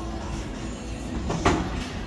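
Low, steady rumble of a bowling ball rolling down a wooden lane, with a sharp clatter about one and a half seconds in.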